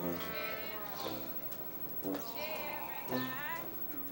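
Street brass band playing traditional jazz, with trumpet and trombone up front and several notes bent upward.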